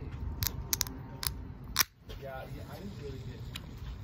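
Several short, sharp clicks and taps as fingers work at the opening of an energy drink container, the loudest click about two seconds in.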